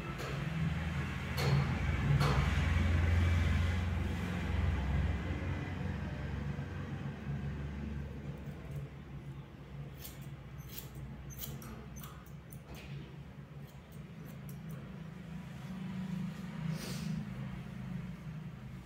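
Hair-cutting scissors snipping through hair: a quick run of short, crisp clicks in the middle stretch, over a low hum that is strongest in the first few seconds.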